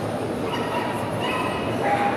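A dog whining in a few short, high-pitched whimpers over steady crowd chatter.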